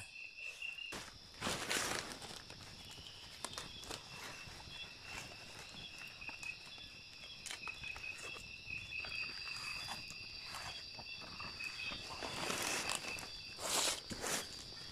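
Insects trilling steadily in high, pulsing tones, with a wood campfire crackling in small clicks. Leaves and paper rustle as a leaf-wrapped fish is lifted off the fire, loudest in a burst about two seconds in and again near the end.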